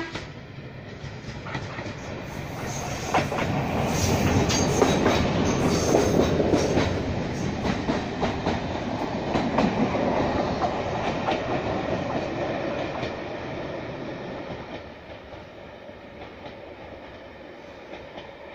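Diesel railcar running past beneath a bridge. It grows louder as it comes near, and its wheels click over the rail joints several times as it goes under. Then it fades away down the line.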